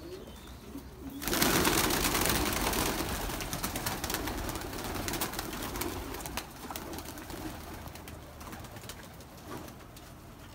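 A flock of young Pakistani flying pigeons taking off about a second in: a sudden burst of wing flapping that thins out over the following seconds.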